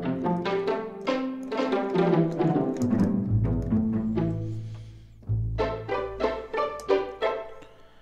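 GarageBand for iPad's Strings Pizzicato sampled instrument played on the touch keyboard: a run of short plucked string notes over low bass plucks. After a lull about five seconds in comes a quick run of plucked notes, about five a second.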